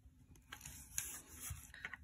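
Faint scratching of a pen writing on planner paper, with the paper rubbing and rustling as the pages are handled and smoothed flat.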